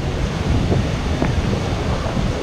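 Wind rumbling on the microphone over the steady wash of ocean surf breaking around the pier pilings.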